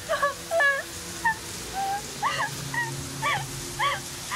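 A run of short, high-pitched whimpering cries, about two a second, each bending up and down in pitch.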